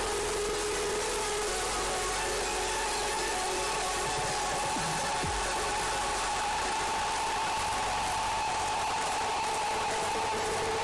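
A steady mechanical hum of two even tones over a constant hiss, unchanging throughout.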